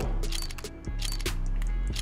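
Background music with a steady bass, over a series of sharp ticks, about three or four a second, from the case-opening reels spinning on a CS:GO case-opening website.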